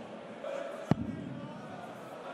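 A steel-tip dart striking a bristle dartboard once with a sharp thud, about a second in.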